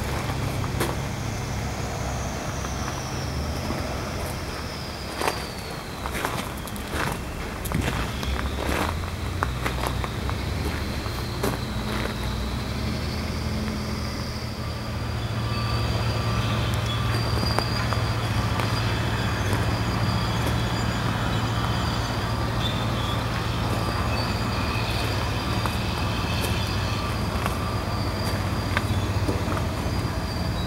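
A heavy engine running steadily, getting louder about halfway through, with scattered clicks in the first half.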